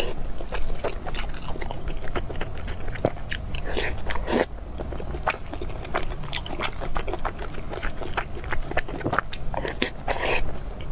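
Close-miked eating sounds: a person chewing mouthfuls of rice with a saucy topping, with many short clicks from the mouth, and one longer, louder mouth noise a little before the middle.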